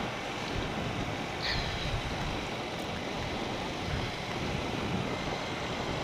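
Steady wind rush over the microphone of a motorcycle under way, with road and engine noise blended underneath and no distinct engine note.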